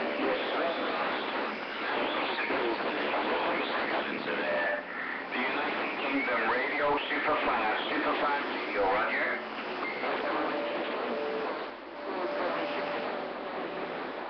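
CB radio receiver audio on AM channel 28: voices of distant stations coming through over one another, hard to make out, under band noise with a few steady whistles.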